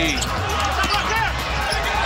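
Basketball game sound on a hardwood court: the ball bouncing with short knocks over a steady arena crowd rumble and scattered voices.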